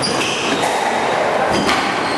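Squash rally: sharp knocks of the ball off racket and walls, about three in two seconds, with short high squeaks of shoes on the wooden court floor over a steady hall hum.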